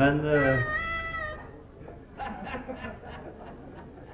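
A man's voice drawing out one long word, then quieter, broken-up talk.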